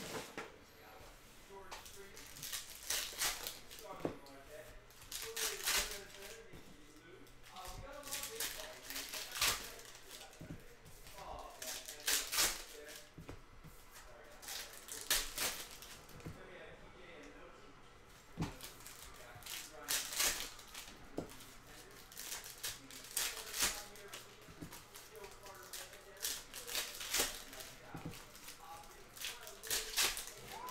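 Foil trading-card packs being torn open and crinkled by hand, with cards riffled and slid against each other: crisp rustling bursts every second or two.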